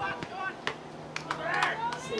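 Voices shouting at an outdoor soccer match, high-pitched calls with several sharp knocks scattered through.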